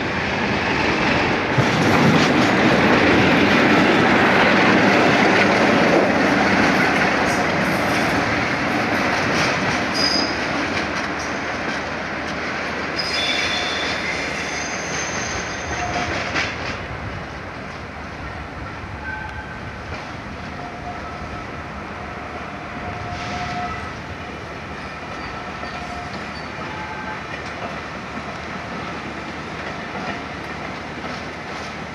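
Passenger trains rolling slowly over station pointwork: a loud rush of wheel and rail noise in the first few seconds, then high-pitched wheel squeals on the curves about ten seconds in and again a few seconds later, settling into a quieter steady rumble.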